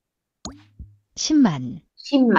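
A short Wordwall flashcard sound effect, a plop with a quick upward pitch glide and a click, as the next number card is dealt. A voice then says a single syllable of a Korean number word.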